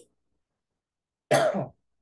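A man's single short cough, clearing his throat, about a second and a half in.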